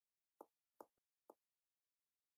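Three faint, short taps about half a second apart, with near silence around them.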